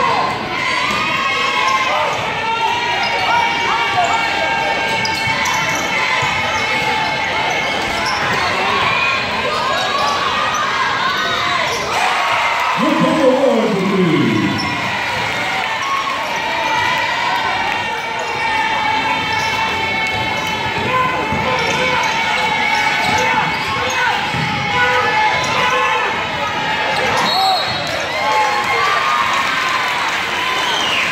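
A basketball bouncing on a hardwood court amid a steady hubbub of player and crowd voices, echoing in a gymnasium during a game.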